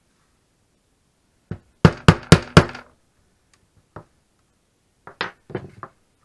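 Mallet striking a metal hole punch through leather on a wooden workbench: a light tap, then four sharp blows in quick succession about a quarter second apart. A single knock follows, then a few lighter knocks near the end.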